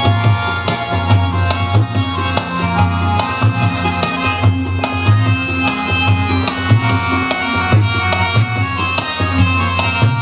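Tabla playing a quick, steady rhythm under harmonium holding sustained notes: an instrumental passage of a light-classical Hindustani (ghazal/film-song) accompaniment, without vocals.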